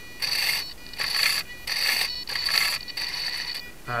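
Cyclic servos of a 450-size RC helicopter driving the swashplate through elevator (fore-aft) tilts: about five short bursts of a high electric whine, one for each stick movement.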